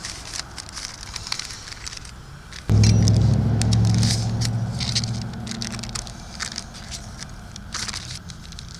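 Paper crinkling and rustling as a sheet is peeled off a flattened raw bratwurst patty and meat is scraped from it with a knife. About three seconds in, a low engine drone, the loudest sound here, starts suddenly and fades away over the next few seconds.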